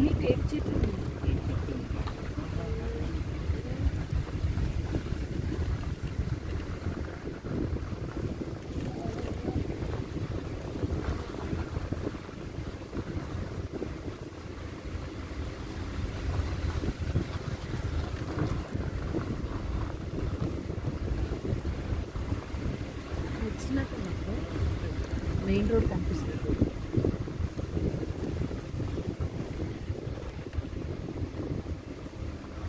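Wind buffeting the microphone over the low rumble of a moving safari vehicle, a steady noisy drone that swells and dips throughout.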